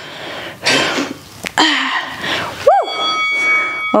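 A woman breathing out hard through her mouth in short bursts while curling a resistance band, with a brief voiced grunt near the end. Faint steady tones begin with the grunt.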